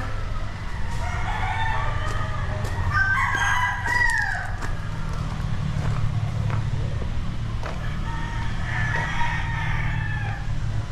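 Many gamecocks crowing over one another, several crows overlapping, the loudest about three to four seconds in and more near the end, over a steady low drone.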